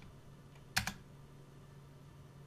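A single computer keystroke about a second in, the Enter key pressed to run a typed command, over a faint steady low hum.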